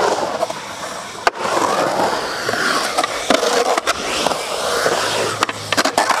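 Skateboard wheels rolling on a concrete bowl, the roar rising and falling in pitch as the board carves up and down the transitions. Several sharp clacks of the board and trucks striking the concrete punctuate it, a cluster of them near the end.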